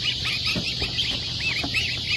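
A boxful of goslings peeping. Many short, high peeps that rise and fall come several a second and overlap one another.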